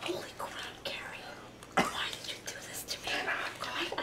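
An Uno card laid down onto the discard pile on a wooden floor, with a sharp slap about two seconds in, amid soft card handling and quiet whispering.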